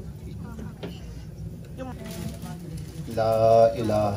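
A man's voice holding one steady note for about half a second, about three seconds in, over faint room murmur, with a second voiced sound starting at the very end.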